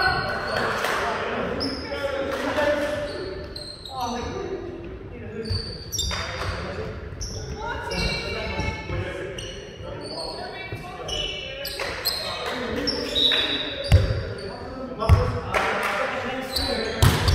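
A volleyball thudding on a wooden gym floor and players' voices calling out, echoing in a large sports hall. The loudest thumps come twice near the end.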